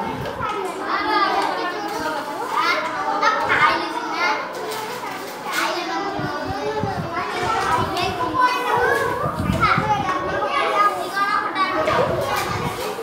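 Many voices, mostly children's, chattering and talking over one another in a continuous overlapping babble.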